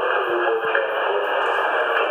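Fire department dispatch radio sounding over a station speaker: a tinny, hissy radio transmission with a voice in it, sending out a call to the crew.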